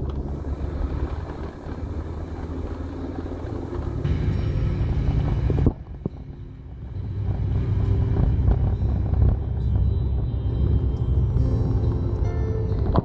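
Car engine and road noise heard from inside the cabin while driving, a steady low rumble that drops off suddenly about six seconds in and then builds up again.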